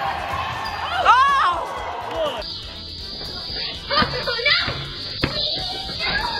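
A high shout in a gym, then a basketball thudding a few times on a driveway amid voices.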